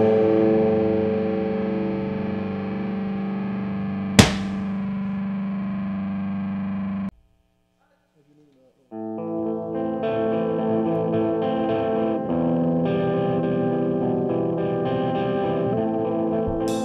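Black/death metal recording: a distorted electric guitar chord rings out, with a single sharp click about four seconds in, and cuts off at about seven seconds. After about two seconds of silence, the next track opens with held distorted guitar chords that change every couple of seconds.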